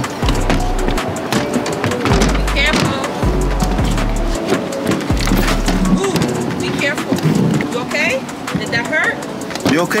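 Background music with a deep bass line that comes and goes in long notes over a steady beat, with brief young children's voices over it.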